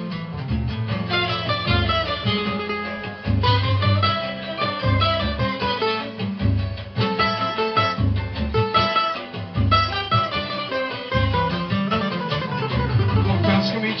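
Cavaquinho picking a running samba melody, with deep bass notes pulsing underneath from an accompanying track.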